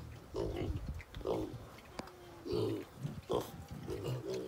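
Weaned piglets grunting in short bursts, about four across the few seconds, with a sharp click about two seconds in.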